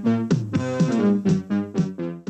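Soundtrack music from a Macedonian feature film: a quick, even run of short notes, about four a second, each dying away fast.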